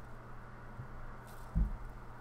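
A single dull, low thump about one and a half seconds in, over a steady low hum.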